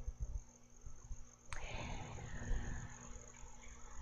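Crickets trilling steadily and high-pitched in the background, under a faint low hum. There are soft low bumps throughout and a single sharp click about one and a half seconds in.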